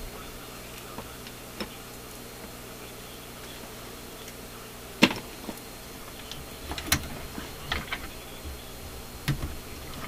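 Scattered clicks and knocks of a coaxial cable and its connectors being handled and hooked up, the sharpest about five seconds in, over a steady low electrical hum.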